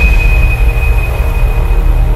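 Dark horror-trailer sound design: a loud, deep rumbling drone with a thin, steady high tone above it that fades out near the end.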